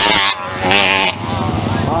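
Small two-stroke Jawa Pionier racing motorcycle passing close at high revs. Its sound drops sharply about a third of a second in, comes back in a short loud rev just before the one-second mark, then settles into a lower, more distant engine note.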